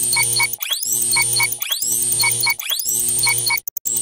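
Glitch-style electronic intro sting: a synthesized rising sweep repeats about once a second over steady low notes and short high beeps, stuttering briefly near the end.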